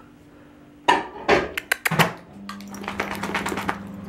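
A few loud clattering knocks about a second in, then a quick run of light clicks and clinks over a steady low hum.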